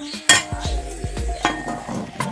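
A pot and its lid clank once sharply about a third of a second in, followed by lighter knocks as the cookware is handled. Background music with a steady beat plays underneath.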